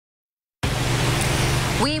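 Steady rushing background noise with a low hum, cutting in abruptly a little over half a second in from dead silence, picked up by a live outdoor microphone; a woman starts speaking near the end.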